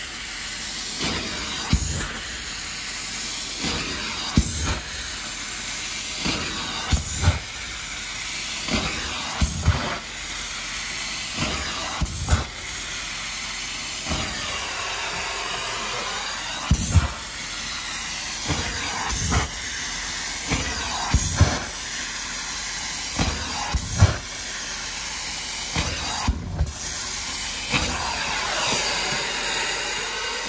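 Carpet extractor stair tool hissing steadily as it sprays and sucks water back out of stair carpet. Short knocks come every second or two as the tool is worked over the steps.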